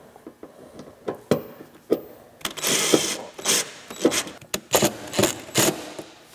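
Cordless power driver tightening the mounting screws of a mud flap into the fender, run in a string of short trigger bursts, the longest about a second long near the middle, then several quick ones.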